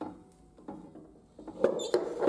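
Hand gripping and moving the metal lever of a boiler's flue damper on its sheet-metal flue outlet: a run of clicks and scrapes, sparse at first and loudest in a cluster about one and a half seconds in.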